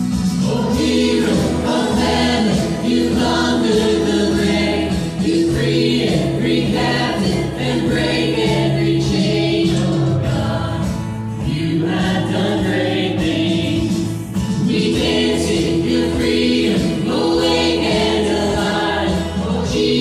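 Contemporary worship band playing a song: several voices singing together over acoustic guitar and electric bass, in phrases with short breaths between them.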